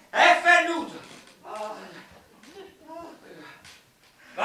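A man's voice on stage: a loud, high-pitched vocal outburst in the first half-second, then a few quieter short vocal sounds with pauses between them.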